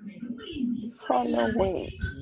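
A person's voice coming through a video call, speaking a short word with a rising and falling pitch.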